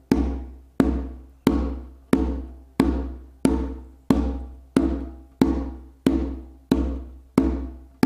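Conga played with the muffled tone ("muff"): single even hand strokes, about one every two-thirds of a second, about a dozen in all. Each stroke is a sharp hit with a short ring that fades before the next. The tone comes from the open-tone hand position with fingertips pressed into the head to change the pitch.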